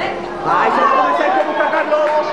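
Voices talking over one another during a youth football match, louder from about half a second in.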